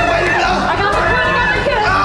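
Several people talking and shouting over one another at once, over background music.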